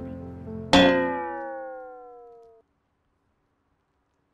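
A single struck, guitar-like musical chord used as a comic sting. It rings out with its pitch sagging downward, then cuts off suddenly, leaving dead silence.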